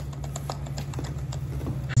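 Eating sounds close to the microphone: an irregular run of sharp clicks and smacks from chewing and handling food with plastic-gloved hands, over a steady low hum.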